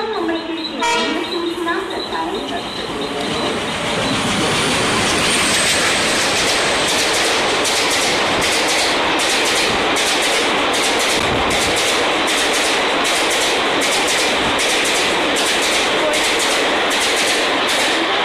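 Diesel-hauled express train running through the station at speed without stopping. Pitched horn-like sounds and voices are heard in the first two seconds. The rush builds about three seconds in to a loud, steady roar of passing coaches, with a regular clack of wheels over rail joints at about two a second.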